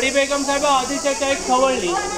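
A man talking steadily, over a constant high-pitched hiss.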